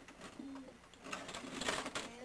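Small toy trains clicking and clattering against each other and the plastic storage case as they are handled. The clatter thickens in the second half. A short low hum comes about half a second in.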